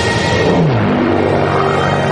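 Propeller-driven piston aircraft engine droning in flight; its pitch falls about half a second in, as in a pass-by, then holds steady.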